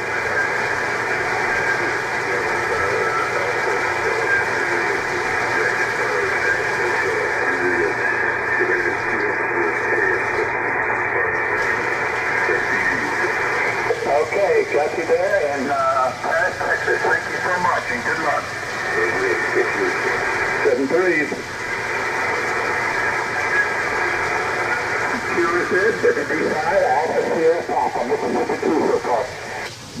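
Icom IC-7300 transceiver's speaker playing single-sideband receive audio: steady band hiss and static with faint, garbled voices of other stations coming through in the middle and near the end.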